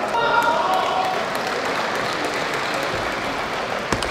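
Steady hall background noise with a brief held tone in roughly the first second, then a single sharp tick of a table tennis ball being struck near the end.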